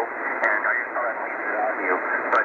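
Amateur radio voice traffic on 3840 kHz lower sideband, played through a Tecsun PL-880 shortwave receiver's speaker: thin, narrow single-sideband speech over a steady hiss of static.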